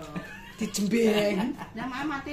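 A woman's voice in drawn-out, wordless sounds, with the pitch sliding up and down.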